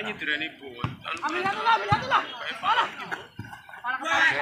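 Several people talking and calling out in the open, voices running on through, with two short dull thuds about one and two seconds in.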